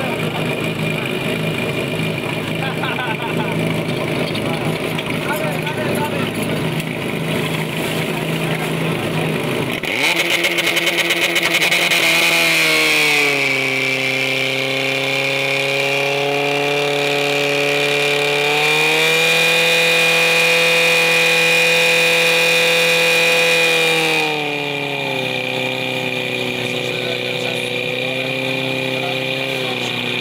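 Portable fire pump engine running at a steady idle, then revving up sharply about a third of the way in and holding a high, steady note under load as it pumps water through the hoses. Its pitch dips briefly and recovers around two thirds of the way in, then falls back to a lower speed near the end.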